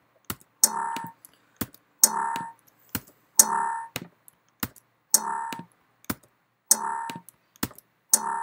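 Computer mouse clicks, with a short electronic chime after about every other click, five chimes about a second and a half apart, as folders are pasted one after another in the Mac Finder.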